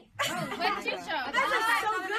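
Speech only: voices talking over one another, starting after a brief silence just after the start.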